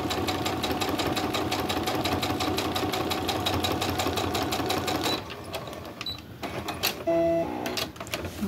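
Brother embroidery-and-sewing machine stitching steadily at a fast, even rate, then stopping about five seconds in. A few clicks and a short hum follow.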